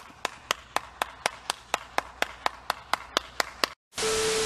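One person clapping hands in a slow, even rhythm, about four sharp claps a second, that stops abruptly just before the end.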